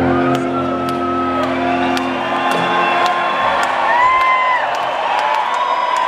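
A sustained distorted electric guitar chord rings out and fades away over the first two seconds or so. An arena crowd cheering and whooping is left.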